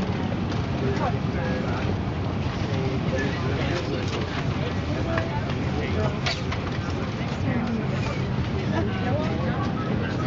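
Steady low hum of an Airbus A340-300's cabin at the gate during boarding, with many passengers talking and a sharp click about six seconds in.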